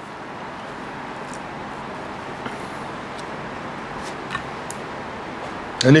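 Steady low hiss of room noise, with a few faint clicks and soft scrapes from a metal spoon spreading peanut butter on a slice of bread.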